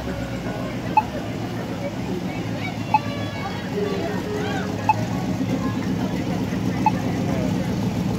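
Parade pickup trucks driving slowly past with a steady low engine rumble, which grows a little louder about halfway through as an older pickup passes close by. Voices of onlookers are heard faintly over it, along with a short tick about every two seconds.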